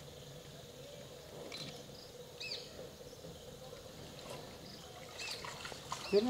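Quiet forest background with a few faint, short chirping bird calls, about two and a half seconds in and again near the end.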